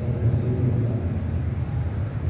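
Steady low rumble of background noise, with no speech.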